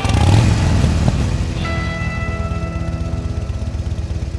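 A motorcycle engine revs loudly as it starts up, then settles into an idle with a fast, even beat.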